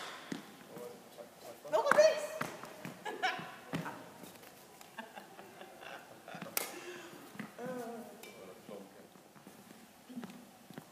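Short bursts of people's voices, the loudest about two seconds in, with a sharp knock about two-thirds of the way through.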